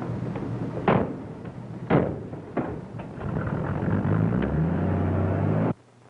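Storm sound effect: steady rain hiss with two loud thunder cracks about a second apart, each trailing off, and a weaker crack after them. A low droning tone comes in about halfway and cuts off suddenly near the end.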